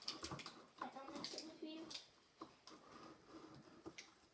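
Faint crinkling of a small sachet and light clicks and taps on a plastic cup while slime mix is tipped in and stirred by hand, with a quiet voice in the first couple of seconds.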